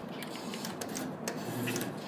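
Claw machine's gantry motors running with scattered clicks as the claw is steered into position over the prizes.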